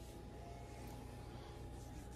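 Quiet kitchen room tone: a faint steady hiss with a faint steady hum, and no distinct sound event.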